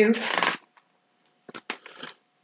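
A picture book's paper page being turned: a few quick rustles and flicks about a second and a half in.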